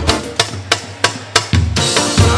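Samba percussion playing a break: the band drops out and about four sharp drum strikes sound in a steady pulse before the full ensemble comes back in near the end.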